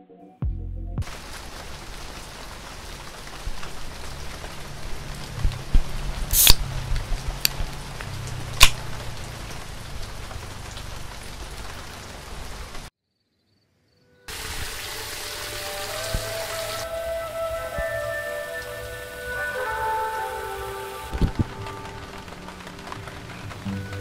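Rain falling steadily under soft background music, with a few sharp cracks a quarter to a third of the way in. The sound drops out for about a second just past halfway, then the rain returns with a melody over it.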